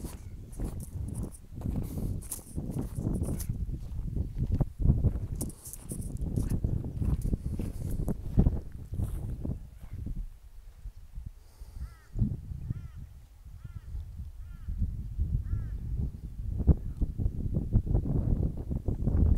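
Wind buffeting the microphone in gusts. In the second half a bird gives a run of about seven short, repeated chirping calls, roughly two a second.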